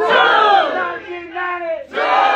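A crowd shouting "Two!" together in answer to a called "Nineteen ninety!", the loud group shout fading after about a second. A single man's voice follows, and the crowd breaks out again near the end.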